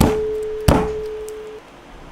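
Two hard strikes about two-thirds of a second apart as garlic cloves are smashed under the flat of a steel chef's knife on a cutting board. The blade rings with a steady tone from the first strike, through the second, fading out after about a second and a half.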